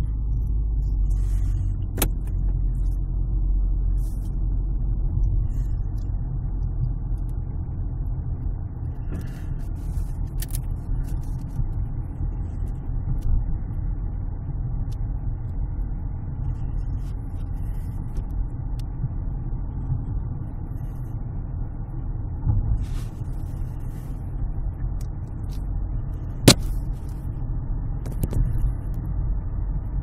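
Steady low rumble of a car driving along a road at an even speed, heard from inside the cabin: engine and tyre noise. A few brief sharp clicks stand out, and the loudest comes near the end.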